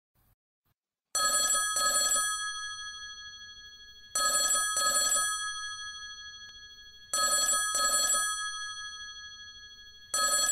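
Telephone bell ringing with a double ring repeated every three seconds: three rings, each fading out, of an unanswered call.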